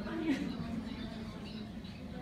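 Indistinct low voices and room noise in a hall, with one brief louder sound about a third of a second in.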